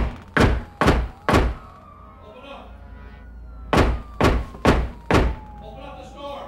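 Heavy knocking on a hotel room door: two runs of four loud, evenly spaced knocks, the second run starting a couple of seconds after the first.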